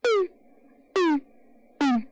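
Electronic synthesizer intro: a short tone that falls sharply in pitch, played three times about a second apart over a faint steady drone.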